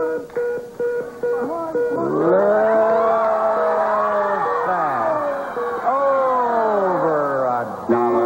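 The Price is Right Big Wheel clicking as it slows at the end of a spin, with drawn-out rising and falling voices from the studio audience over it.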